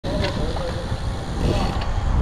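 Wind buffeting the microphone of a camera on a moving bicycle, a steady low rumble, with faint voices in the background.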